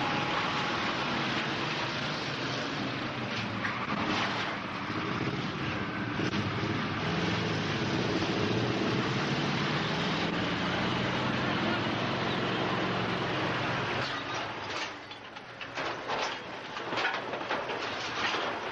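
A vehicle engine running under a steady, heavy rushing noise. About fourteen seconds in the noise drops and a string of irregular clicks and knocks follows.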